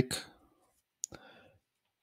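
A single sharp computer mouse click about a second in, as the debugger is stepped on to the next line of code.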